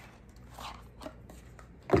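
Faint handling of a cosmetic product's packaging as it is opened: a light click, then soft rustling and scraping, with another small click about a second in.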